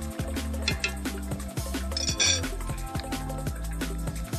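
Background music, with a wooden spatula scraping and knocking in a wok, and a few sharp clinks about two seconds in.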